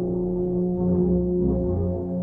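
Brass band playing a euphonium medley: slow, low brass chords held as long sustained notes.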